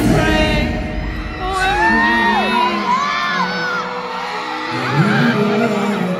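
Live pop song played over the hall's sound system; its heavy beat stops about halfway through, leaving a held chord. Fans scream and whoop over it.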